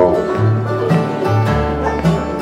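Acoustic bluegrass band playing: banjo, fiddle, mandolin and acoustic guitar over an upright bass that changes notes about twice a second.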